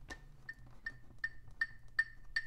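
Metronome clicking at a steady tempo, a little under three clicks a second, each click a short, high, pitched tick.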